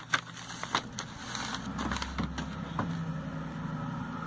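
Glossy paper catalog pages being handled and turned, with a few short rustles and taps in the first second or so. A low steady rumble runs underneath.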